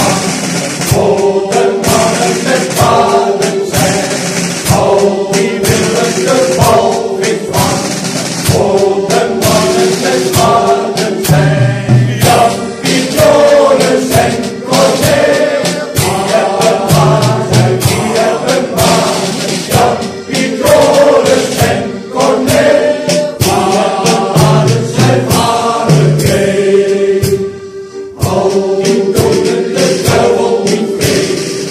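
Male choir singing a song in unison with drum-kit accompaniment: drums and cymbals keep a steady beat under the voices. The music briefly dips near the end.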